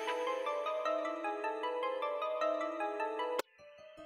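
Reason's Parsec synthesizer playing a mallet-style preset: a quick repeating melody of short pitched notes, about five a second. It cuts off suddenly about three and a half seconds in as the next preset is loaded, and a fainter, softer patch begins.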